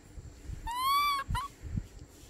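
Baby macaque crying: one high, drawn-out call of about half a second that rises slightly in pitch, followed at once by a short second note. A soft low bump or two comes after it.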